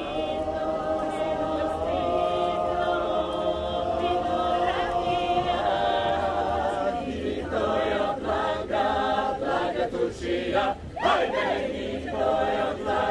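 A group of voices singing a Bulgarian folk song together without instruments: one long held note for about the first half, then shorter, broken phrases.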